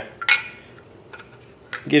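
A sharp metallic clink, then a few faint light clicks: the LWRCI SMG-45's barrel knocking against the upper receiver as it is slid back in during reassembly.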